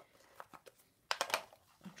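Lid of a small clear plastic storage box being pressed shut and the box handled. A few faint clicks come first, then a louder cluster of sharp plastic clicks about a second in.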